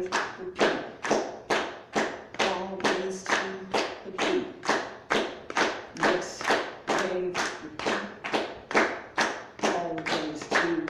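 Audience clapping a steady beat in unison, about two claps a second.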